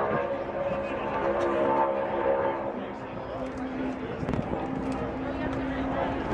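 A NASCAR Cup car's V8 engine at full throttle on a single-car qualifying lap, heard across the track, its note dropping to a lower pitch about halfway through.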